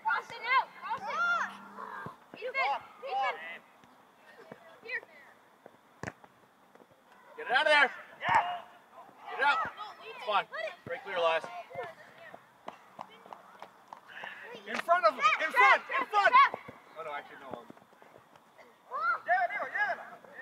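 Shouting voices of players and coaches during a youth soccer match, coming in bursts with short quiet gaps between. A single sharp knock about six seconds in.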